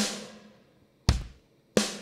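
Sampled kick and snare of the Addictive Drums 2 Black Velvet kit (a DW Collector's Series kit), played one hit at a time from a MIDI keyboard: three separate strikes, the first at the start, the next about a second in and the last shortly after, each ringing out and decaying.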